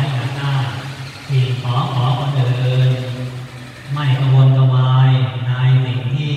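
A Buddhist monk chanting in a low male voice, holding long, nearly level notes in phrases, with short breaks about a second in and again around three to four seconds in.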